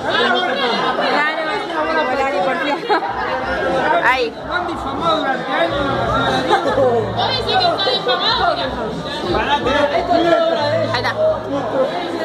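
Several people talking at once in a loud, overlapping chatter, with music playing underneath; its low bass comes and goes.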